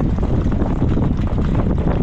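Heavy wind buffeting the microphone of a moving jog cart, over a dense, irregular clatter of a harness horse's hooves on the dirt track and the rattle of the cart.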